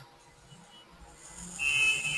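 A steady high-pitched electronic tone, about a second long, coming in past the middle after a near-quiet start.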